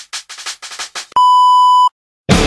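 Test-tone beep for colour bars: a steady, pure, high beep held for under a second, cutting off suddenly. Before it comes a run of quick percussive hits fading away at the tail of the music.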